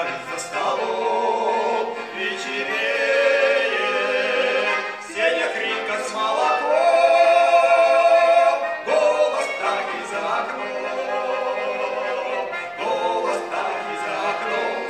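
Two male soloists singing a Russian Cossack folk song in phrases, accompanied by a button accordion.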